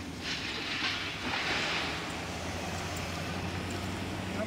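Wooden beehive lid being slid into place over the hive box: a scraping, rushing noise in the first two seconds, over a steady low hum.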